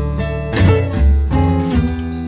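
Electric Chicago blues band playing an instrumental stretch, guitars to the fore over a strong bass line, with no singing.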